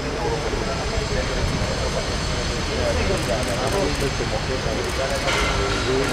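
Indistinct, overlapping voices of a tightly packed crowd of reporters, over a steady low rumble.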